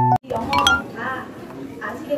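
A piano-like keyboard tune cuts off abruptly, then people's voices murmur in the background with a few light clinks about half a second later.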